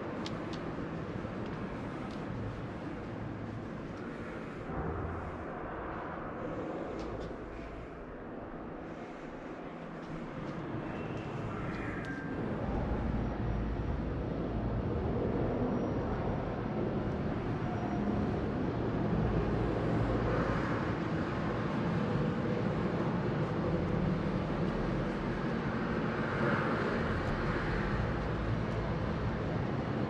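Steady background noise of a large indoor exhibition hall, a low rumble with no distinct events, growing fuller and louder about twelve seconds in.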